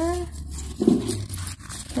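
Folded slips of paper rustling and crackling as they are shaken together between cupped hands to mix them for a draw, with one louder rustle about a second in.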